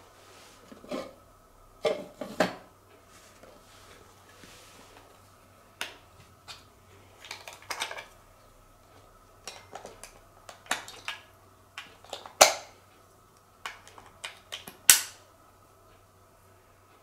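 Hands handling a small boxed object and its parts: scattered light clicks, taps and rustles, with two sharper knocks near the end.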